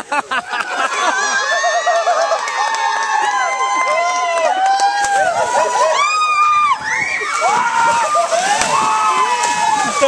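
Several people shrieking and shouting over one another in high voices, with water splashing in a swimming pool as they jump into the cold water.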